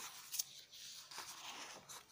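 A paper page being turned over: a crisp snap at the start and another just under half a second in, then a papery rustle that dies away near the end.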